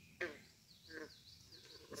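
Two short faint animal calls: one about a fifth of a second in that falls steeply in pitch, and a shorter one about a second in, with faint high chirping behind.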